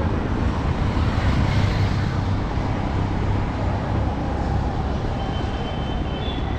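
Steady street traffic noise, a constant low rumble of passing vehicles.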